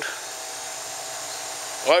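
Steady background hum and hiss with a faint steady whine.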